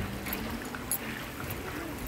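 Water running in a shallow outdoor infinity-edge water feature: a soft, steady wash.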